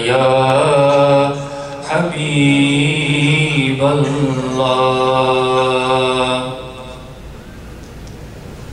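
A man chanting unaccompanied into a microphone in long, drawn-out melodic phrases with held notes; his voice stops about six and a half seconds in.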